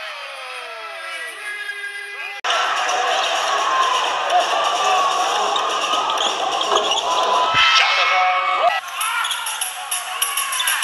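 Basketball game broadcast sound in an arena: a ball dribbling and sneakers squeaking on the hardwood over crowd noise. About two and a half seconds in, an abrupt edit cuts to a louder, denser stretch of arena noise.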